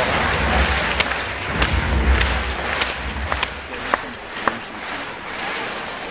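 Crowd cheering and shouting in a large sports hall, with about eight sharp clacks in the first four and a half seconds.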